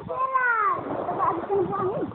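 A child's high, drawn-out wordless call that rises and then falls over about the first second, followed by shorter wavering cries and voices.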